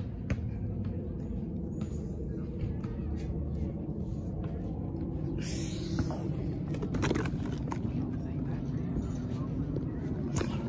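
Steady low rumble and a few short knocks from a phone microphone being carried and swung while walking, with indistinct voices in the background.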